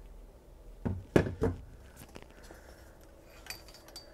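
Three short knocks about a second in, then a few faint clicks: the KLH Model Eight's solid walnut cabinet being set aside and its metal tube chassis being taken in hand on the bench.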